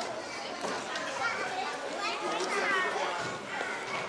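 A group of young children chattering and calling out at once, many high voices overlapping, with an adult voice or two among them.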